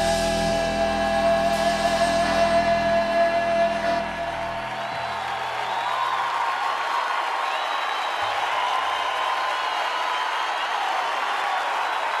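An Argentine folk band ends a chacarera on a held final chord that rings for about four seconds. Then a large audience applauds and cheers.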